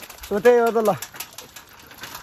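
A young man's voice: one short, drawn-out utterance starting about a third of a second in and lasting under a second. Low outdoor background follows, with faint scattered clicks.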